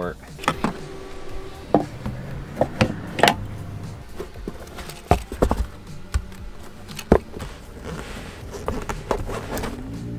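Handling noise: a string of separate clicks and knocks at irregular intervals as a Tesla CCS charging adapter is unplugged and put away in its hard zippered case.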